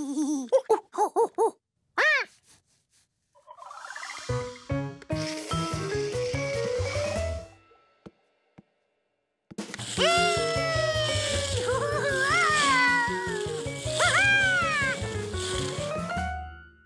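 A cartoon monkey's voice makes a quick string of short chattering calls, then background music climbs in a run of rising notes over a steady beat. After a brief pause the music comes back, with long gliding hoots from the monkey over it.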